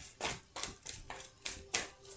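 A handful of short, sharp clicks and taps at uneven intervals, about five in two seconds, from hands handling a deck of oracle cards.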